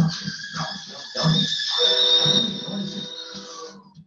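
Comic sound effect from an educational video played over classroom speakers: a few short sounds, then a long high-pitched whine held steady for about two seconds, with music underneath.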